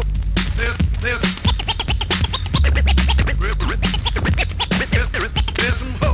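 Hip-hop DJ mix: a vinyl record scratched on a turntable in rapid back-and-forth strokes over a looping beat. A deep bass note comes back about every three seconds.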